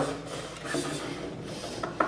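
Tenor saxophone played softly on a low note with a breathy, airy tone, as an extended technique in free improvisation; the note fades out about halfway through. A few short clicks follow near the end.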